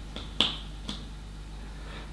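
Small planet discs being stuck onto a whiteboard: one sharp click a little under half a second in, with two fainter ticks around it.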